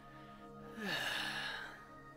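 A man's long breathy sigh, falling in pitch, lasting about a second from near the middle, over soft background music with sustained notes.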